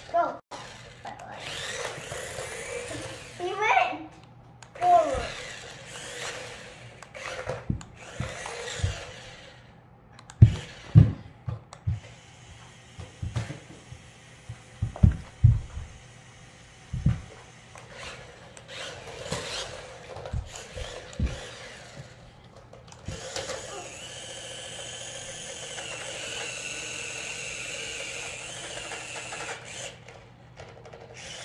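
Small electric motors of toy remote-control bumper cars whirring in a steady whine through the last several seconds. Earlier there are children's voices and a series of low thumps.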